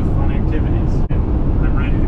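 Steady low road and engine rumble inside the cabin of a Sprinter van driving at highway speed, dropping out for an instant about a second in.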